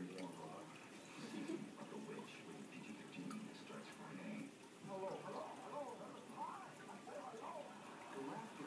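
Quiet, faint speech in the background, with no clear sound from the feeding itself.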